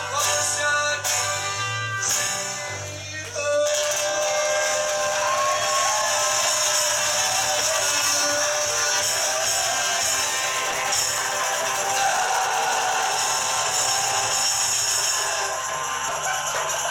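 A small live band playing, with acoustic guitar, trumpet, saxophone and shaken maracas. About three and a half seconds in the bass drops out, and a long held note over steady shaking percussion carries on until the fuller band returns near the end.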